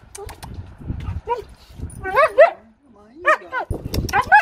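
Siberian husky whining and "talking": short yowling calls that rise and fall in pitch, a brief one just over a second in, a quick pair around two seconds and another near the end.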